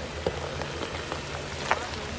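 Jeep Wrangler's engine running low and steady at crawling speed while its mud tyres crackle and squelch over a wet, slushy dirt track, with two sharp cracks, the louder one near the end.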